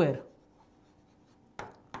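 Pen writing on a display board: a quiet stretch, then two short, sharp taps of the pen tip on the surface near the end, over a faint steady hum.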